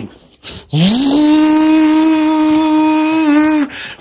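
Canister vacuum cleaner switched on: its motor spins up with a quick rising whine and runs at a steady pitch with airflow hiss for about three seconds. It cuts out shortly before the end and then spins up again.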